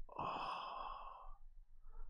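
A man's long, breathy, exasperated sigh lasting about a second, from straining to recall a name.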